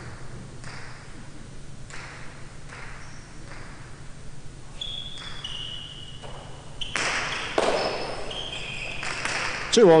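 Jai alai pelota served and striking the front wall with a loud, echoing crack about seven seconds in, followed by a second sharp hit. Short high squeaks of shoes on the court floor come before and between the hits.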